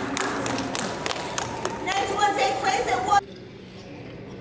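Chatter of people in a large hall with scattered sharp clicks, and one voice standing out from about two seconds in. A little past three seconds the sound cuts off abruptly to a quieter room hum.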